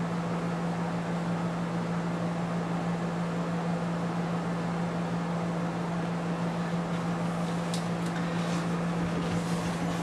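Steady mechanical hum with a strong low drone, like a fan or air-handling unit running, with a few faint clicks near the end.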